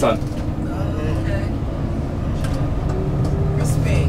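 Tour bus driving, heard from inside the cabin: a steady low rumble of engine and road, with a thin whine that climbs slowly in pitch through the middle as the bus speeds up. Faint voices sit under it.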